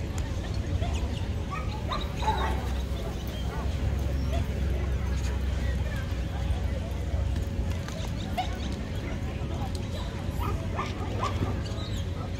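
Dogs barking and yipping now and then, over a steady low rumble.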